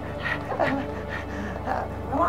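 A man laughing in short, broken bursts.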